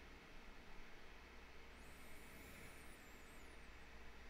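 Near silence: room tone with a faint steady low hum. A faint, wavering high-pitched warble comes and goes in the middle.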